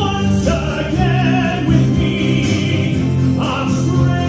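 Music: a sung musical-theatre number with long held notes over accompaniment.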